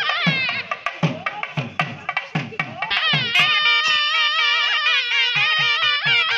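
Nadaswaram playing an ornamented, wavering melody over thavil drum strokes. The drum beats come steadily in the first half and thin out as the nadaswaram moves into longer held notes.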